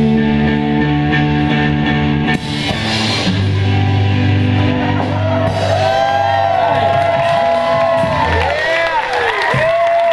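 Kids' rock band with electric guitar and bass holding long sustained chords at the end of a song, with a short break about two seconds in. From about halfway through, high voices whoop and cheer over the held notes.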